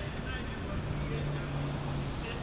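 Street traffic ambience: a steady low rumble, joined about a third of the way in by the steady low hum of a vehicle engine.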